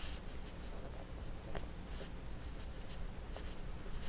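Faint scratchy rustling of hands handling a stuffed crocheted amigurumi head and drawing yarn through its stitches, with a few small ticks over a low steady hum.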